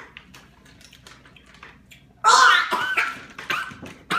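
A few faint clicks, then, about two seconds in, a child's loud, high-pitched shriek of disgust that lasts over a second, a reaction to a foul-tasting jelly bean.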